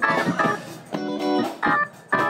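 Live soul band playing between vocal lines, with held organ-toned keyboard chords struck in three short stabs about half a second each.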